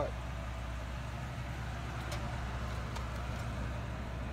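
Triton V10 engine of a 1999 Ford F-350 Super Duty idling: a steady, even low hum.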